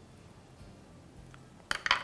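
Metal craft scissors set down on a work board, giving a quick cluster of sharp metallic clinks with a short ring near the end.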